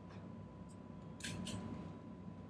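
Two sharp computer keyboard key clicks about a quarter second apart, after a couple of fainter taps, over a low steady background hum.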